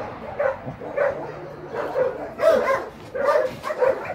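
A dog barking repeatedly, roughly two short barks a second, louder in the second half.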